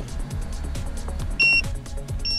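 Background music with a steady beat, and about one and a half seconds in a single short, high electronic beep from a handheld OBD-II code reader as its button is pressed.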